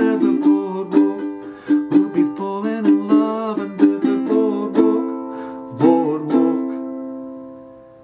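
Tenor ukulele strummed in a steady rhythm, closing the song with a last chord about six seconds in that rings out and fades away.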